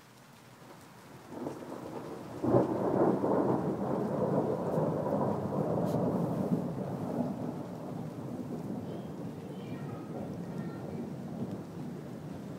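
Rumbling, rustling noise of something rubbing right over the microphone. It rises about two seconds in and eases off slowly.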